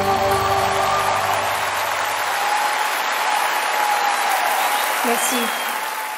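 Large concert audience applauding at the end of a live song, while the last held note of the music fades out in the first couple of seconds.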